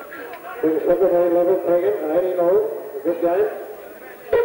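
A man's voice talking close to the microphone, with no other clear sound; the words are not made out.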